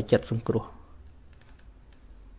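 A man's voice speaking, breaking off about half a second in, followed by a quiet pause with a few faint clicks.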